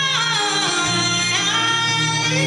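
Woman singing a long gliding vocal line live over band accompaniment, her voice sliding down at the start and back up about one and a half seconds in.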